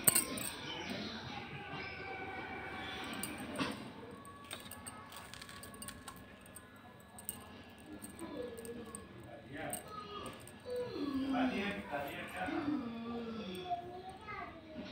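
Faint background voices, clearer in the second half, with scattered light metallic clinks of a stainless steel spoon and plate as the sesame-peanut laddu mixture is handled; a sharp click at the very start.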